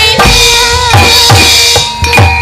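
Javanese gamelan music for a wayang kulit show. A kendang drum beats about two strokes a second, each stroke dropping in pitch, under ringing metallophone tones, with a sinden's female voice singing over the ensemble. The music dips in loudness near the end.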